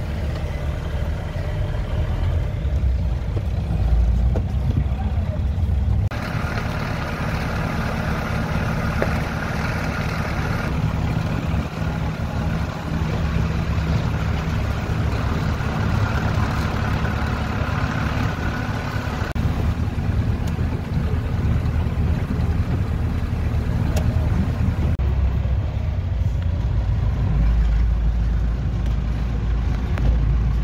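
Agrale-based motorhome's engine running steadily while driving, heard from inside the cab, with tyre and road noise. The road noise gets louder and rougher at a few points.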